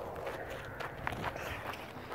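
Footsteps of a person walking on outdoor ground, several soft irregular steps.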